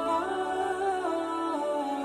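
Background music: a wordless vocal melody moving in stepped notes at a steady level.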